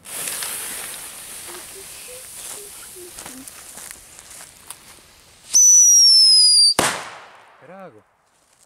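Black Scorpion Super Whistling firecracker: the lit fuse hisses for about five seconds, then a loud whistle falls steadily in pitch for just over a second and ends in a sharp bang.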